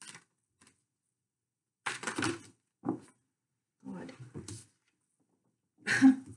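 A deck of tarot cards being shuffled by hand in several short bursts.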